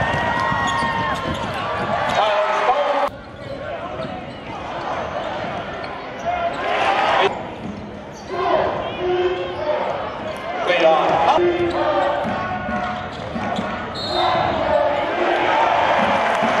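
Live basketball game sound in an arena: the ball bouncing on the hardwood court, with players' and crowd voices around it. The sound drops suddenly about three seconds in, then the game sound goes on.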